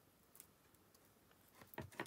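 Near silence: a few faint clicks and rustles of thin metallic card being worked apart by hand, with a couple of sharper small clicks near the end.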